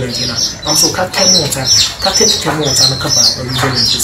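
Birds chirping over and over in short, high calls, a few each second, with people talking underneath.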